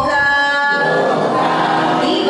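A woman singing a devotional verse unaccompanied into a microphone, holding long steady notes, with a change of note about three-quarters of a second in.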